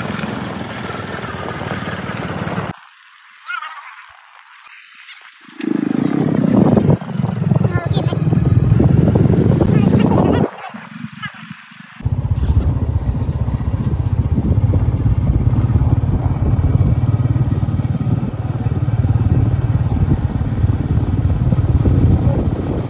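Motorcycle engine running steadily while riding, with wind rushing over the microphone. The sound is broken by cuts into two short, much quieter stretches, and voices can be heard in the middle part.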